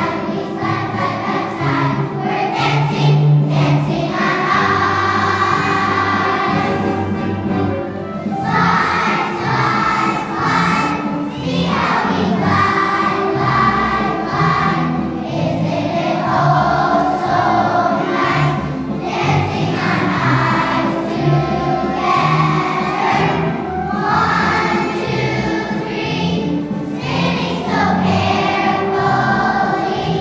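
A children's choir singing a song together, its sung phrases separated by short breaths every few seconds.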